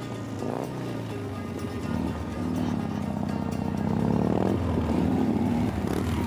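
Motorcycle engine running as the bike approaches, growing louder from about two seconds in, over background music.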